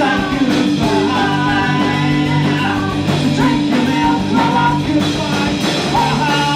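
Live punk rock band playing: electric guitar, bass guitar and drum kit, with a woman singing.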